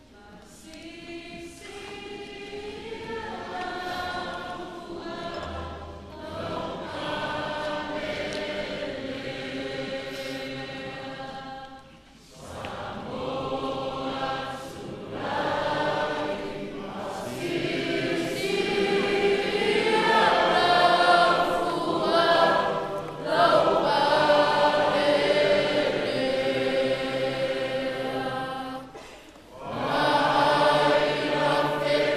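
A choir singing in many voices with long held notes, starting softly and swelling fuller and louder, with a short break about twelve seconds in.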